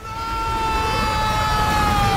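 Sound effect of the TARDIS lurching in turbulent flight: a long whine slowly falling in pitch over a rumble.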